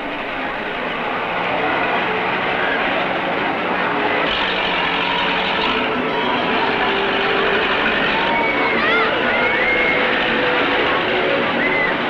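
Noise of a spinning amusement-park thrill ride and its crowd on an old film soundtrack: a steady, dense rumble of ride machinery mixed with crowd voices. A few short, high, rising-and-falling cries come in the second half.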